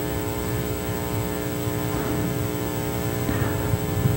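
Steady electrical mains hum with a buzzy row of overtones, even in level throughout.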